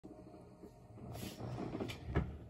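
Faint handling noise: a soft rustle from about a second in and a light click near the end, over a low hum.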